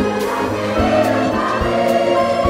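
Children's choir singing with instrumental accompaniment.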